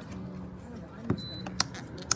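A few light clicks of a metal wire whisk knocking against a stainless steel saucepan, over a faint murmur of voices.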